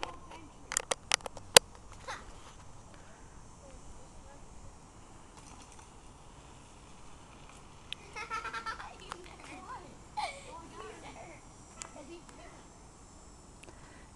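Faint children's voices in the distance, heard mainly in the second half, over quiet outdoor background, with a quick run of sharp clicks about a second in.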